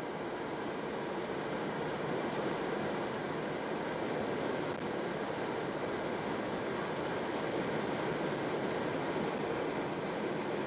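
Steady road noise inside a car cruising on a motorway: tyre and wind noise as an even, unbroken rush.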